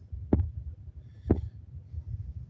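Two soft thumps about a second apart over a steady low rumble.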